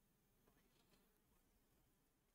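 Near silence: faint room tone, with a couple of faint short ticks in the first second.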